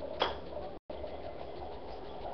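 One short snap about a quarter of a second in as a homemade paper gun is pulled back and let go, over a steady low hum. The sound cuts out completely for an instant just under a second in.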